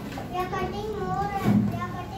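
A young girl's voice speaking, reciting a speech. There is a brief low bump about one and a half seconds in.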